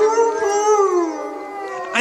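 A chorus of howling wolves: several long howls overlap, each slowly rising and falling in pitch.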